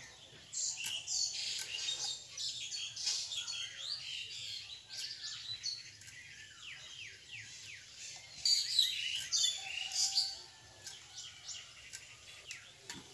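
Birds chirping, many short rapid calls one after another, busiest and loudest in the later half.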